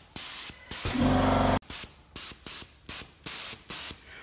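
Air-assisted airless spray guns fed by a pneumatic piston pump, triggered in a rapid series of short hissing spray bursts. About a second in, a longer burst comes with a louder low hum lasting about half a second.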